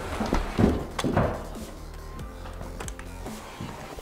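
Background music, with a few soft knocks and scraping from a drywall flat box being run along a ceiling joint.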